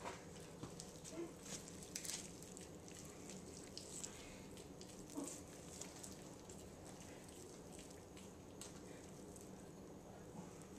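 Faint wet tearing and squishing of rotisserie chicken meat being pulled apart by hand in a bowl, with scattered light clicks, more of them in the first half.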